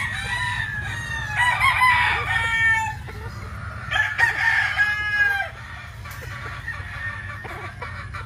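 Gamefowl roosters crowing twice, each crow about a second and a half long, with a steady low hum underneath.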